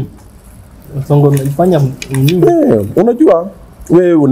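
A man's voice talking at the table, starting about a second in after a short lull.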